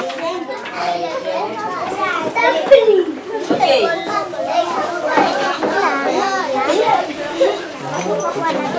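Many children's voices talking and calling out at once, a steady overlapping classroom chatter with no single voice standing out.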